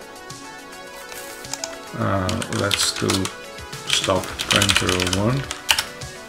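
Typing on a computer keyboard, a few key clicks, over steady background music, with a voice sounding without clear words from about two seconds in.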